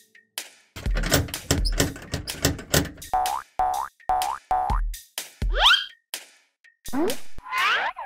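Cartoon sound-effect music: a beat of heavy thumps with a run of four short springy boings, then rising pitch glides toward the end.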